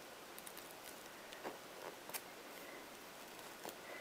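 Faint handling noise of hands pinning a damp, starched crocheted piece onto a cloth-covered cushion, with a few soft clicks spaced through it.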